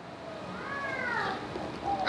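A faint, drawn-out meow-like call in the background, about a second long, that rises and then falls in pitch.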